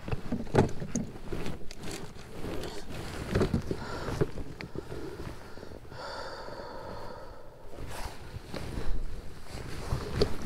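Handling noise in a plastic fishing kayak: scattered knocks, bumps and rustles as a caught largemouth bass and a phone are handled on the deck, over light wind on the microphone.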